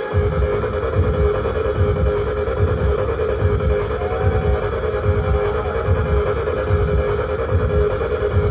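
Trance music from a DJ set played loud over an arena sound system, heard from within the crowd. A steady four-on-the-floor kick drum comes in right at the start, about two beats a second, under sustained synth chords.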